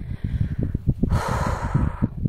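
A person's loud, breathy exhale about a second in, over wind buffeting the phone microphone.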